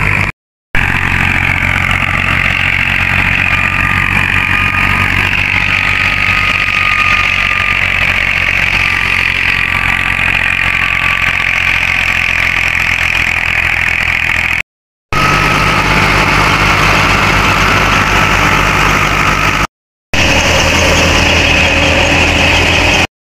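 Tractor engine running steadily under load, driving a wheat thresher, with the low engine drone under a high steady whine from the thresher. The sound cuts out briefly three times.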